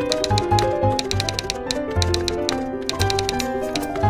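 Typewriter key-strike sound effects, a quick run of sharp clicks as the letters are typed, over background music with a steady bass line and melody.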